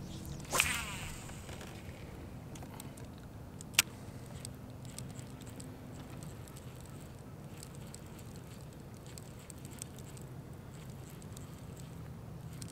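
A cast with a baitcasting reel: fishing line whirs briefly off the spool near the start. A single sharp click follows about four seconds in. After that there is only a faint steady low hum and light ticking as the lure is slowly reeled in.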